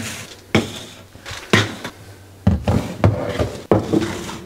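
Plastic supplement bottles being set down on a kitchen countertop: a series of about five sharp knocks spread over a few seconds.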